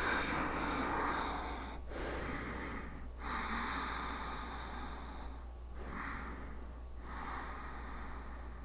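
A woman's deep, audible breathing as she holds downward-facing dog: slow breaths in and out, each one to two and a half seconds long.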